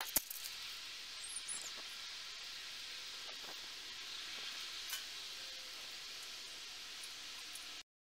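A safety match struck on a matchbox, a sharp scrape just after the start, followed by a steady sizzling hiss as lit matches are held to paper pages. A second small click comes about five seconds in, and the sound cuts off suddenly just before the end.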